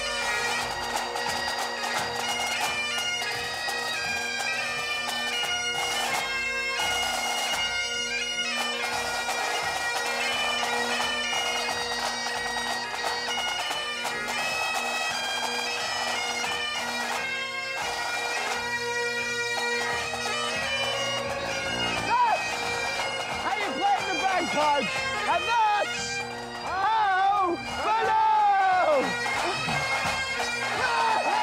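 A pipe band of Great Highland bagpipes playing a tune together, the drones held steady under the chanters' melody. In the last several seconds, voices shout over the pipes.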